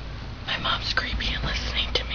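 A person whispering softly from about half a second in, over a low steady hum.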